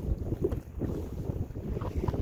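Wind buffeting the microphone, an uneven low rumble that flutters in strength over open, choppy lake water.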